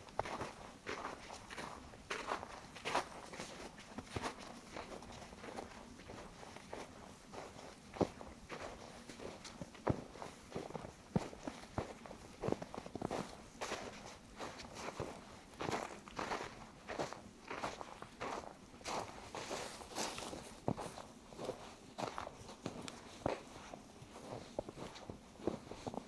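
Footsteps crunching in fresh, deep snow at a steady walking pace.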